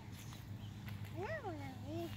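A toddler's high sing-song voice: one call sliding up and back down about a second in, then a short held note near the end, over a steady low hum.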